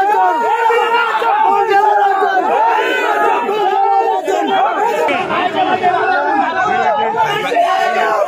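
A crowd of men shouting over one another, loud and without a break.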